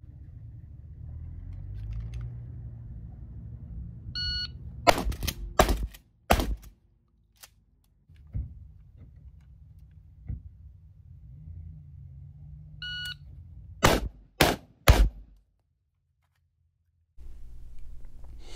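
Shot-timer beep, then three shotgun shots in about two seconds. After an edit, a second timer beep and three rifle shots, just as fast. Low wind rumble on the microphone between the strings.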